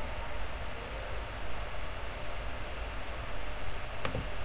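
Steady hiss and low hum of a microphone's background noise, with a single sharp click at the very end.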